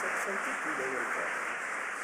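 Audience applauding steadily, slowly dying down, with a few voices talking close by.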